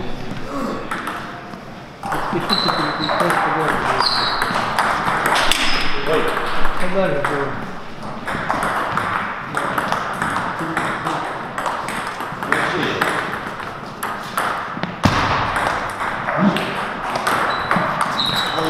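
Table tennis ball being hit back and forth, clicking off the paddles and bouncing on the table in rallies, with breaks between points.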